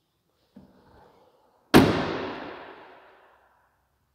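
Rear swing gate of a 2023 Jeep Wrangler, with the spare tire mounted on it, being swung shut: one sharp, loud slam just under two seconds in that rings on for about a second and a half, after a faint softer sound of the gate moving.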